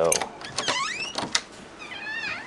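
A door being opened: a few latch clicks and high, wavering squeaks from the hinges.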